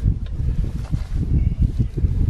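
Low, irregular rumble of wind on the microphone, with a few faint clicks as wire fencing is hooked onto the coop's corner post.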